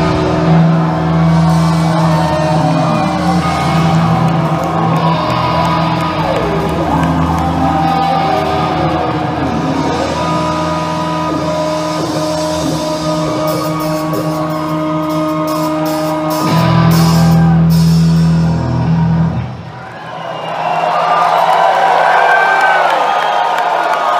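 Live rock band playing with electric guitars over a held low bass note, with gliding, bending guitar lines. The music stops about twenty seconds in, and the crowd cheers and whoops.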